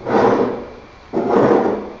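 A wooden board and an aluminium 45-degree dowelling jig being handled and fitted together: two scraping, sliding sounds, one at the start and one about a second in, each fading out.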